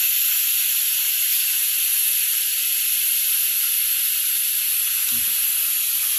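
Aluminium pressure cooker venting steam in a steady high hiss as its weighted valve is held up with a spoon, letting the pressure out so the lid can be opened.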